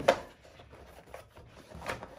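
Plastic paintball loader being pushed down into its cardboard box: a sharp knock right at the start, faint rubbing of plastic against cardboard, then a smaller knock near the end.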